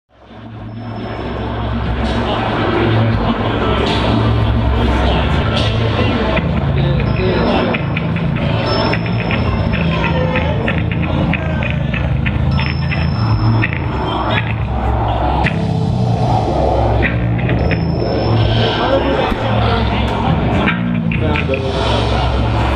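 Hardcore band playing live, with heavy distorted bass and guitar dominating and a thin high whine coming and going on top. It fades in over the first two seconds.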